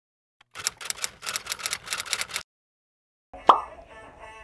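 A quick run of sharp clicks like typing, about two seconds long, then a pause and one sharp click near the end.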